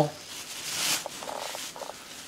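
Plastic grocery bag strips crinkling as they are pulled through a braided plastic-bag mat, loudest just before a second in, followed by a few faint soft scrapes.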